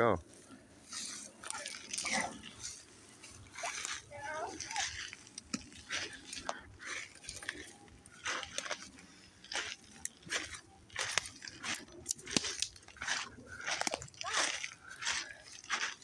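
Footsteps crunching and rustling on dry grass and pine needles, in an irregular run of steps.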